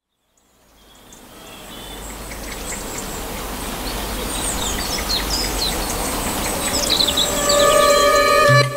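Outdoor ambience fading in from silence and growing louder: small birds chirping in short, quick calls over a steady hiss and low rumble.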